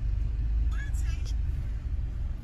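Steady low rumble of a car riding along, the engine and road noise heard from inside the cabin.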